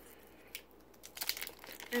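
Foil booster pack wrapper crinkling in the fingers: a single crackle about half a second in, then a run of short scattered crackles in the second half.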